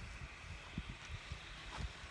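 Faint outdoor wind rumble on a phone microphone, with a few soft, irregular low thumps.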